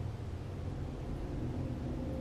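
Steady low rumble with faint hiss: background room noise with nothing standing out.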